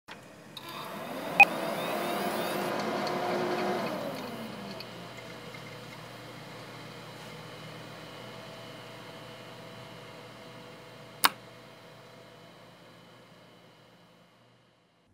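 A computer starting up: a click about a second in, then a whir that swells for a few seconds before dropping to a fainter steady hum, which slowly fades away. A single sharp click comes about eleven seconds in.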